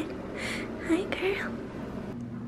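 A woman's soft, whispery talk in a high voice, a few short phrases.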